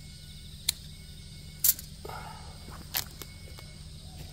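Three sharp clicks about a second apart, the middle one loudest, over a steady low hum.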